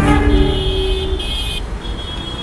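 City street traffic with vehicle horns honking: held high horn notes overlap and come and go over a steady rumble of traffic.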